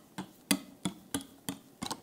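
Wire whisk clicking against a glass mixing bowl about three times a second while meringue is mixed into egg-yolk batter.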